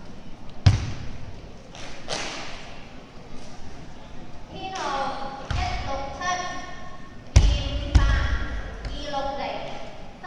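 Foot stamps on a wooden sports-hall floor during a Chen-style tai chi form: one sharp thud about a second in and two more close together past the middle, ringing in a large hall. Voices talk in the background from about halfway through.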